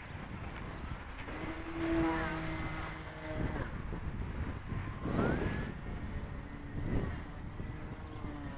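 Radio-controlled model airplane flying overhead, its motor and propeller making a thin whine that changes pitch as it flies, rising just after five seconds in.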